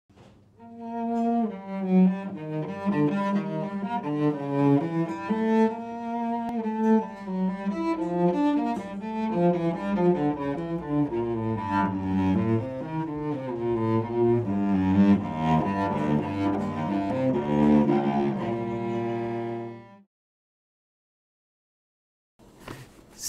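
Solo cello playing a slow, lyrical melody of sustained bowed notes, ending about twenty seconds in.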